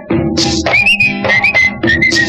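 Instrumental passage of an old Tamil film song playing from a vinyl record: a high, wavering melody line over steady percussion.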